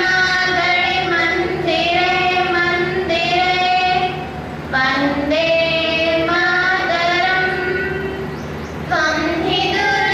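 Young female voices singing a slow song in long held notes, phrase after phrase, with a short break about four and a half seconds in.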